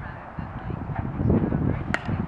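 A softball bat striking a slow-pitch softball once, a sharp crack near the end, over a low, uneven rumble.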